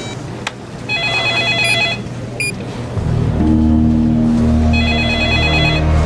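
Norstar office desk telephone ringing twice, an electronic warbling ring, the two rings about four seconds apart. Low dramatic music comes in about halfway.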